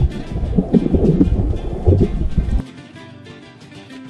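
Muffled rumbling and churning of water around a submerged camera, loud and low, cutting off abruptly about two and a half seconds in. Guitar background music plays throughout and is left on its own after the cut-off.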